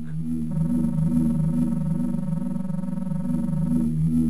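Synthesized electronic sound effect: a steady pitched electronic tone comes in about half a second in and cuts off just before the end, over a low pulsing electronic hum. It plausibly stands for the biostatic tank machinery as a crew member is lowered into it.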